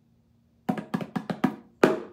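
Pair of bongo drums played with bare hands: after a brief pause, a quick run of sharp strokes about two-thirds of a second in, then a single louder stroke near the end.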